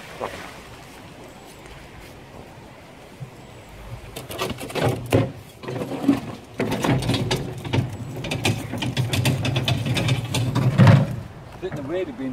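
A thrown magnet-fishing magnet splashes into a canal, then its rope is hauled back in by hand: from about four seconds in comes a dense run of rattling clicks and scrapes that grows louder until near the end.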